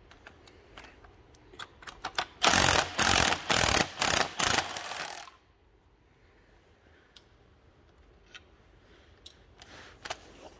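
Ratchet wrench backing nuts off the studs of an engine cover: scattered clicks, then about three seconds of rapid ratcheting in a few runs that stops suddenly, followed by faint handling clicks.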